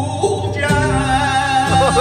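Flamenco singer (cantaor) singing a liviana, drawing out a long held vocal line that breaks into ornamented, bending turns near the end, accompanied by a flamenco guitar.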